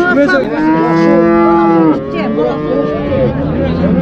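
Cattle mooing: one long, loud call lasting about a second and a half, starting about half a second in and cutting off suddenly.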